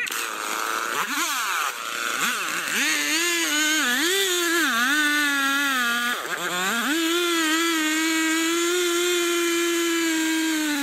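Stihl two-stroke chainsaw starting up right away and revving up and down for several seconds. It dips briefly about six seconds in, then runs steadily at high revs while the chain cuts through a large tree trunk.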